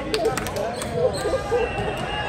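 Athletic shoes squeaking on a gym floor in a flurry of short rising-and-falling chirps, thickest in the first second, mixed with a few sharp ball bounces.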